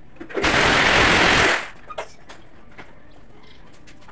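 Power drill running in one loud burst of about a second, drilling overhead into the aluminium sliding-door frame, with a few small knocks afterwards.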